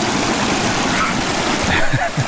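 A small mountain creek running fast over rocks close by: a steady, loud rush of water.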